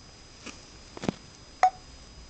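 Samsung Galaxy Mega smartphone being handled: a couple of light clicks and knocks, then about a second and a half in a short beep, the phone's volume-change tone as a volume key is pressed.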